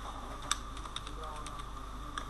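Computer keyboard keys being typed: a handful of separate, irregular key clicks over a faint steady hum.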